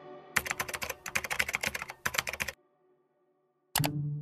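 Computer keyboard typing: a quick run of key clicks that stops about two and a half seconds in.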